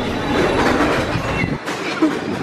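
London Underground train rumbling in the station, heard from a passageway; the deep rumble drops away about a second and a half in.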